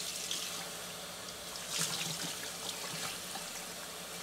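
Kitchen faucet running steadily into the sink while soapy hands are rinsed under the stream, the water splashing off the hands.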